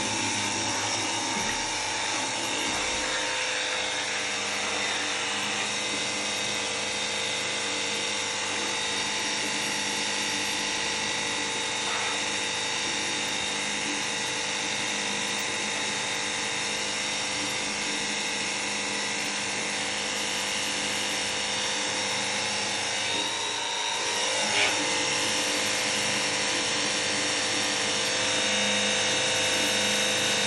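Cordless 20 V battery-powered pressure washer gun running continuously, its motor and pump giving a steady, even whine, with the hiss of the water jet spraying into a plastic bucket.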